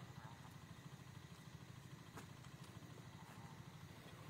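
Near silence: a faint steady low hum with a couple of faint ticks.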